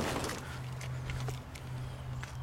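Faint handling noises, light knocks and fabric movement, as a convertible's soft top is pulled up over the cabin by hand, over a steady low hum that starts about half a second in.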